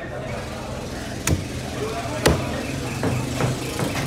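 Knife blade chopping into tuna on a wooden block: two sharp chops about a second apart, then a few lighter knocks, over a steady hum of voices.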